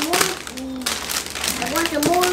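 Plastic snack bags rustling and crinkling as they are handled, with brief bits of voice.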